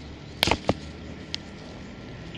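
Plastic wrapping around an air layer crackling as fingers pinch and pull at it: a quick cluster of sharp crackles about half a second in, and a single one past a second.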